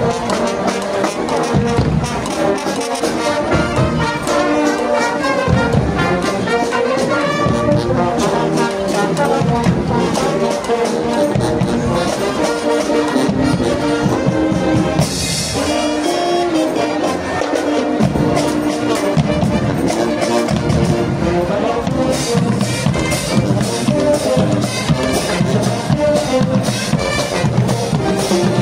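Marching band playing live: a brass section of trumpets and trombones over steady marching drums. A brief bright crash about halfway through.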